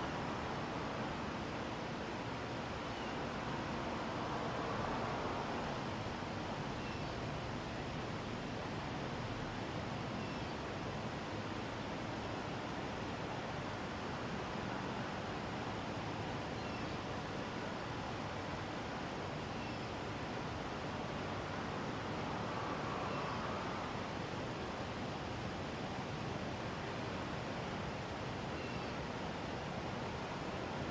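Steady outdoor background hiss with no distinct events, swelling gently about four seconds in and again about twenty-two seconds in.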